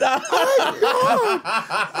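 A man laughing in a run of short chuckles.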